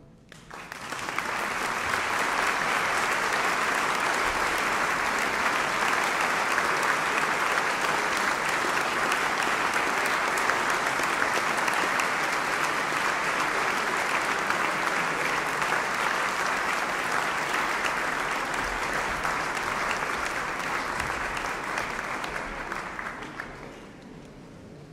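Audience applauding steadily in a concert hall after a song ends, building up within the first second and dying away near the end.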